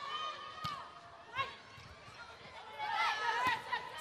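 Volleyball rally in an indoor arena: players' short calls echo around the hall, with a few sharp knocks of the ball being hit.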